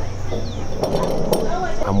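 A few light clinks of a stainless-steel phin coffee filter against its glass cup as it is handled, about a second in.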